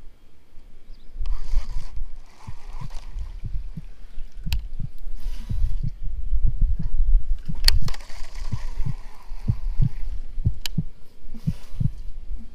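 Irregular low thumps and rumble of handling and movement on a chest-mounted GoPro Hero 5's microphone, broken by a few sharp clicks and short bursts of hiss.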